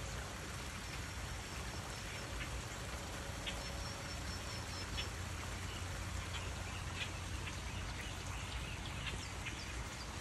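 Steady rushing of a small flowing stream, with about a dozen brief, sharp high calls from small animals scattered through it.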